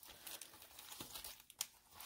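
Faint crinkling of a clear plastic die-set sleeve being picked up and handled, in scattered soft crackles, one a little louder near the end.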